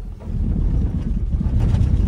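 Low, uneven juddering rumble and rattle in the cabin of a Vauxhall car as it rolls slowly over a rough surface, starting a moment in. It is not the engine stalling, though it sounds like it.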